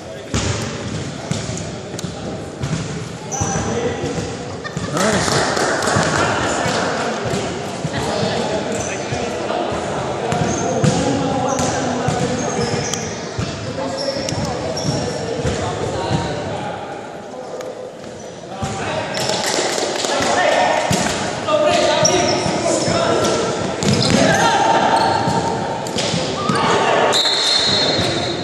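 A basketball bouncing on a hardwood gym floor during free throws, with people's voices talking in the gym.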